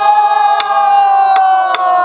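A group of pansori students singing one long held note together, its pitch sinking slightly, with three sharp strokes on buk barrel drums.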